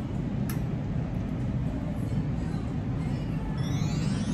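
Steady low background rumble of a room, with a single sharp click about half a second in. Near the end, a rising musical sound effect starts.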